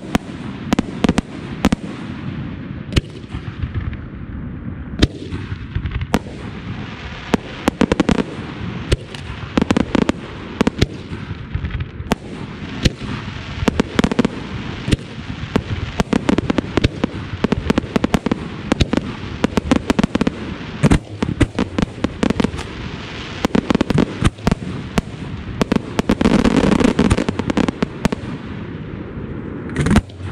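Daytime fireworks display: a rapid, continuous barrage of sharp bangs and reports from aerial shells over a steady crackle and rumble, growing densest and loudest about three-quarters of the way through.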